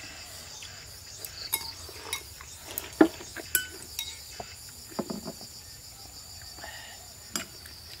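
Eating at a table: chopsticks clicking against porcelain bowls, with slurping and chewing in short irregular bursts, the sharpest click about three seconds in. Under it runs a steady high insect drone.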